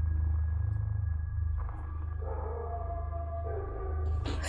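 Horror film soundtrack: a steady deep rumbling drone, with sustained higher tones coming in after about a second and a half.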